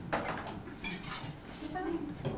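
Glasses and tableware clinking and knocking as drinks are handled and set down on a table, a few short clinks in the first second.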